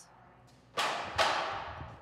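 Aluminium ladder frames clattering on a hard floor: a sudden crash about three quarters of a second in, a second hit just after, then the rattle dies away over about a second.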